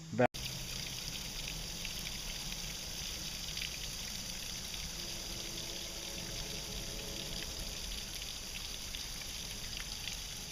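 Water trickling steadily down a wet rock face, a small seep or falls, after an abrupt cut about a third of a second in.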